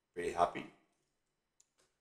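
A brief spoken phrase, then two faint computer keyboard key clicks about a second and a half in, close together.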